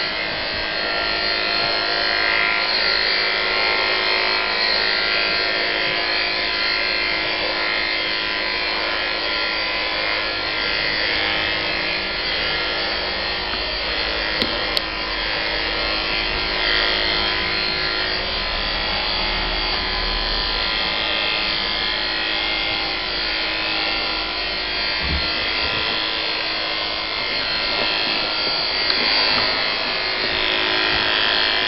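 Electric dog-grooming clippers with a comb attachment running steadily, cutting through the terrier's coat. Two brief clicks come about halfway through.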